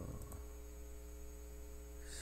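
Steady low electrical mains hum with its overtones, with two faint clicks shortly after the start.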